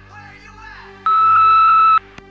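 Answering machine beep: one loud steady electronic tone about a second long, starting about halfway through and cutting off abruptly, signalling the start of the next recorded message. Faint background sound comes before it.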